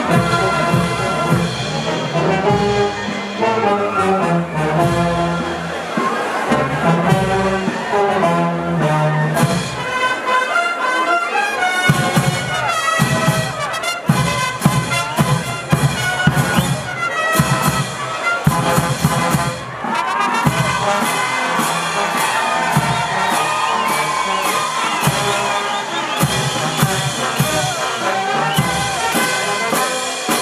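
Brass band playing live: trumpets, trombones, saxophones and large bass horns over snare drums, a bass drum and crash cymbals. From the middle onward the drums and cymbals keep a steady, driving beat under the melody.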